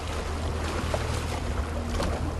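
Steady wind on the microphone and rushing water around an ocean rowing boat being rowed at sea.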